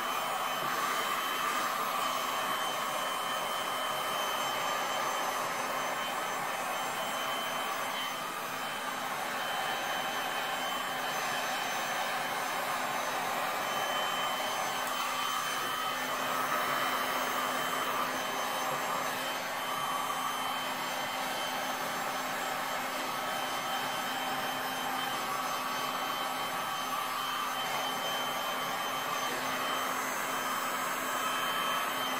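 Electric heat gun running steadily, a continuous fan whir with a steady motor whine, as hot air is played over wet epoxy resin to blend the colours.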